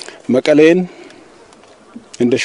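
A man's voice says a short phrase, then pauses, leaving only faint outdoor background noise.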